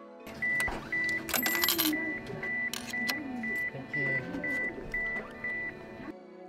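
Station ticket vending machine beeping about twice a second, with loud clicks and clatter as coins and the ticket are handled.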